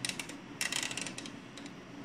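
Rapid detent clicks of a rotary selector knob on an HP analog oscilloscope being turned by hand, a few at the start and a quicker run about half a second in, as the vertical range is set to 5 mV per division.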